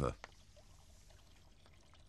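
Faint, steady sound of water pouring from the end of a gutter into a tank of water, washing sand and gravel along with it.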